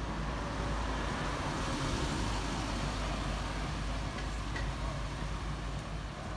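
A car driving along a narrow town street, heard as a steady engine and tyre rumble.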